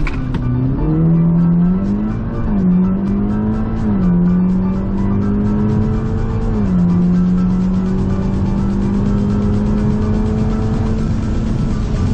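Audi S3's turbocharged four-cylinder engine at full throttle on a drag-strip launch, heard from inside the cabin. The revs climb and drop back with three upshifts, about two and a half, four and six and a half seconds in. After the third shift the revs rise slowly and level off near the end.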